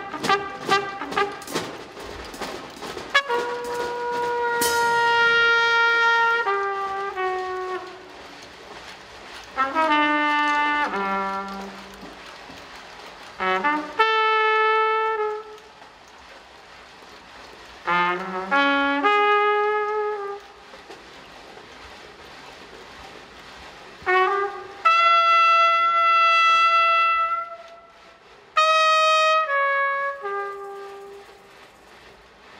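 Trumpet playing slow, free-improvised jazz phrases of long held notes, separated by pauses, with a few percussion taps at the start.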